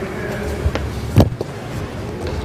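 Steady background noise with two knocks, a small one near the start and a louder, sharp one just past the middle.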